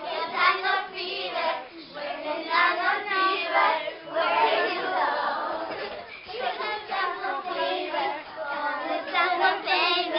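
A group of children singing together while they dance, many voices at once.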